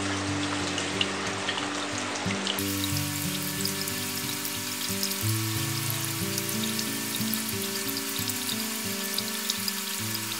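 Thin streams of water spraying from the outlets of a multi-way aquarium water divider and its air tubing, splattering onto rock and soil in a steady trickling patter. Background music plays over it.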